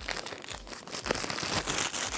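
Clear plastic shrink-wrap film being pulled off a phone box and crinkled in the hand, a dense crackling that grows louder in the second half.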